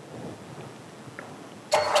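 Low steady hiss of studio room tone. Near the end, the soundtrack music of an inserted video cuts in abruptly and loudly.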